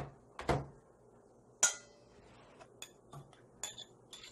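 A metal spoon clinking against a stainless steel mixing bowl and a small dish as seasoning is spooned in. There is one sharp, ringing clink about a second and a half in, then several lighter taps and clicks.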